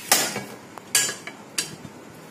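Three sharp metallic clatters of a stainless steel bowl being handled on a wooden table: one right at the start, a second about a second in, and a slightly softer third soon after.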